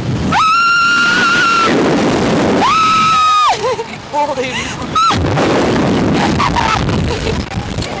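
Riders on a SlingShot reverse-bungee ride screaming during the launch: one long, high held scream near the start, another about two and a half seconds in, and a short yelp about five seconds in. Wind rushes over the ride-mounted microphone throughout.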